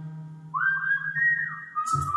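A man lip-whistling a Hindi film song melody into a microphone over a karaoke backing track with a held bass note. About half a second in, the whistled note slides up and holds, steps higher, then drops to a lower note near the end.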